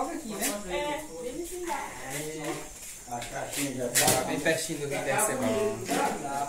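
People talking, their words indistinct.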